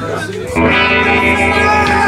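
Electric guitar through an amplifier sounding a loud chord about half a second in and letting it ring.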